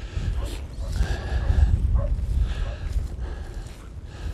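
Strong north wind buffeting the microphone in a steady low rumble, with faint sounds from cattle grazing close by.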